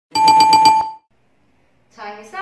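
Quiz timer's time-up alarm sound effect: a loud electronic ring, rapidly pulsing, lasting just under a second, signalling that the answering time is over.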